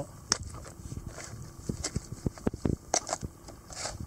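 A small plastic box with moulded-in snap latches being unclipped and its lid pried open, a series of sharp plastic clicks and knocks; the lid is held tight because the box is packed full.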